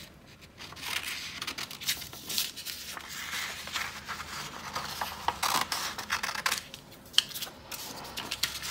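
Scissors snipping through red paper in a run of short, uneven cuts around a traced circle, with the paper rustling as it is turned.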